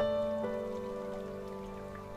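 Background music of held, sustained notes, with a new chord at the start and another about half a second in.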